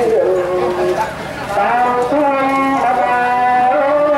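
A man chanting a Khmer Buddhist prayer into a microphone, in long, drawn-out held notes that slide from one pitch to the next, with a short break about a second in.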